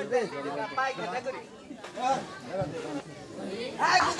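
People talking, with several voices overlapping in chatter.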